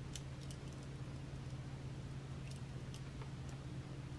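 A few faint, sharp clicks of jewelry pliers and small metal jump rings and beads being handled, over a steady low hum.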